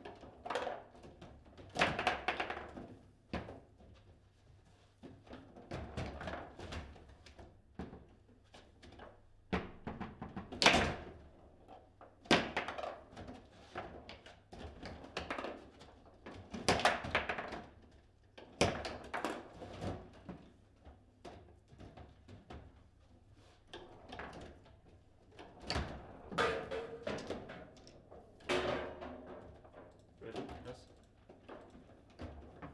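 Table football in play: the hard ball knocked by the rod-mounted figures and against the table, an irregular run of sharp knocks and clacks. The loudest strike comes about eleven seconds in.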